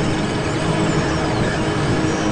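Noise-drone music: a dense, steady wash of sound with faint falling pitch sweeps running through it.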